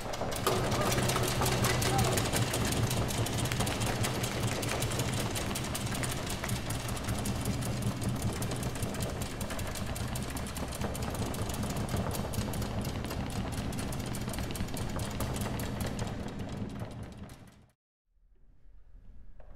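Audience applauding, a dense steady clapping that fades out near the end.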